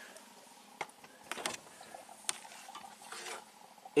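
A few light clicks and rustles of handling over a faint steady hiss.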